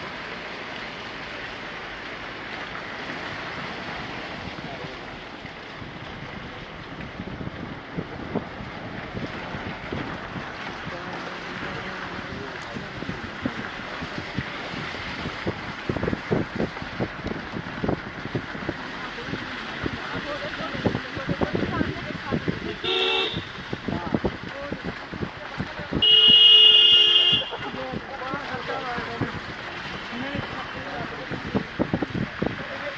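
A vehicle horn honks on a street. There is a short toot about three quarters of the way through, then a louder honk lasting about a second and a half near the end, the loudest sound here. Underneath is a steady background hiss with scattered clicks.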